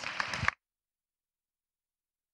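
A brief burst of unclear noise, cut off abruptly about half a second in and followed by dead silence: an edit in the recording.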